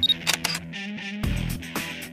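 Intro music with DSLR camera sound effects over it: a short high beep right at the start, like an autofocus-confirm beep, then several sharp shutter clicks.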